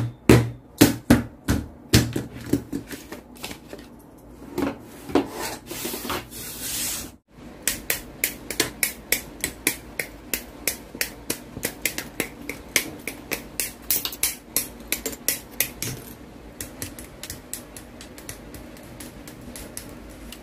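Plastic model kit parts being handled: a series of sharp plastic clicks and taps, with a paper-like rustle about six seconds in, then a regular run of about three to four clicks a second that fades near the end.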